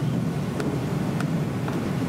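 Steady low hum of room background noise, with faint, evenly spaced ticks about every half second.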